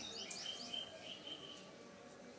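Bird chirping faintly in a quick run of short, high repeated notes that fades out after about a second.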